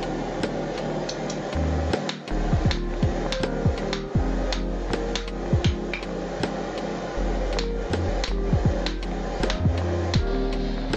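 Repeated hand-hammer blows on red-hot steel on an anvil, a sharp ring at an uneven pace of about two to three strikes a second, under background music with held low notes.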